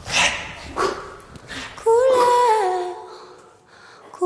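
A cappella choir voices: a few short breathy vocal bursts about half a second apart, then about two seconds in the voices sing a held chord that steps down in pitch and fades away.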